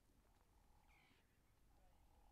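Near silence, with a brief faint high-pitched call about a second in.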